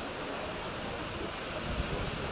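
Steady wind noise on the microphone over open-air ambience, with low gusts buffeting the microphone toward the end.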